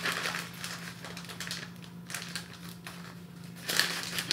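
Plastic mailer bag crinkling and rustling in short irregular bouts as it is handled and opened, over a steady low hum.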